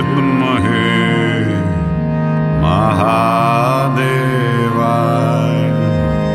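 Devotional kirtan music: a voice chanting a mantra with sliding, held notes over a sustained harmonium drone.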